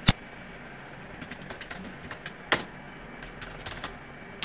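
Clicks of a computer mouse and keyboard: one sharp click at the start, then scattered light key taps and a sharper key click about two and a half seconds in, over a faint steady hiss.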